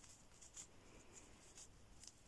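Faint feather rustling as a young corvid preens under its wing on a person's shoulder: a few soft, brief strokes over near silence.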